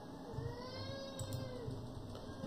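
A faint, single drawn-out animal call whose pitch rises and then falls, lasting about a second and a half.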